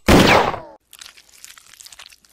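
A cartoon pistol shot: one loud, sudden crack that dies away within the first second. It is followed by faint, scattered crunching clicks of a vulture tearing at flesh.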